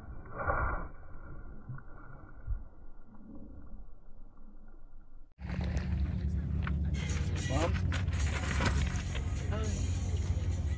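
A small striped bass released by hand into shallow water, with a short muffled splash about half a second in. After a sudden change a little past halfway, a loud steady low drone takes over with voices over it.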